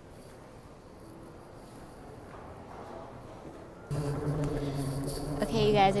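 Faint, steady terminal background for the first few seconds. Then, about four seconds in, the steady mechanical hum of an airport moving walkway starts suddenly, and a woman begins speaking over it near the end.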